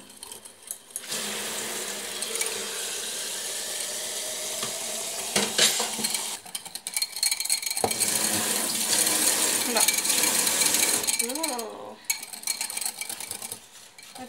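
Wire whisk beating a sesame paste and tofu-milk mixture in a glass bowl, the wires rattling and scraping against the glass in two long, steady bouts with a short pause between. A voice is heard briefly near the end.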